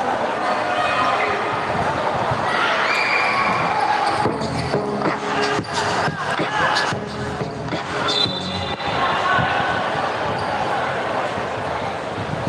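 A basketball being dribbled and bounced on an indoor court, with a string of sharp thuds a few seconds in as players run the floor. Crowd and player voices echo in the large hall throughout.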